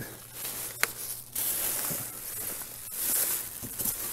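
Plastic wrapping rustling and crinkling as it is pushed aside and handled, in uneven swells, with a sharp click about a second in.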